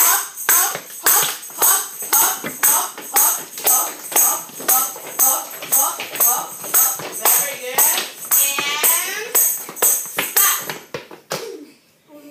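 Tambourine struck by hand in a steady beat, about two strikes a second, its metal jingles ringing on each tap. The beat stops near the end.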